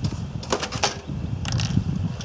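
A few sharp knocks and clatters of a hand saw and timber being handled on a folding workbench, in a cluster about half a second in and again about a second and a half in, over a low rumble of wind on the microphone.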